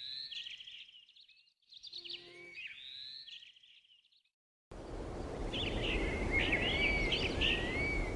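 Birds chirping in two short bursts, then after a moment's silence a steady outdoor background hiss with birdsong starts about five seconds in.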